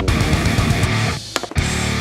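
Background rock music with guitar, dipping briefly a little past halfway before coming back.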